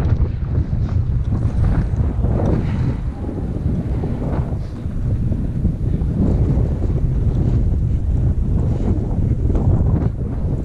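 Wind buffeting the microphone of a skier's action camera during a downhill run: a loud, low, uneven rush. Skis scrape over the tracked snow beneath it.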